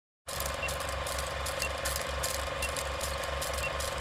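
Film-leader countdown sound effect: an old film projector's steady mechanical clatter with hiss and hum, and a short high beep once a second, four times.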